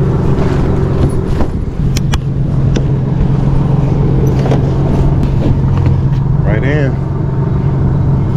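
A vehicle engine idling with a steady low hum, while a box spring is handled onto a pickup bed with scattered knocks and rustles.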